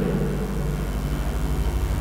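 A steady low hum and rumble of room background noise, with no distinct events.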